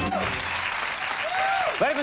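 Studio audience applauding, with a man's voice beginning to speak over it near the end.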